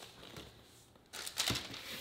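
Salt and black-pepper shakers shaken over a glass bowl of shredded chicken: quiet at first, then about a second in a quick run of scratchy, rattling shakes, with a dull knock among them.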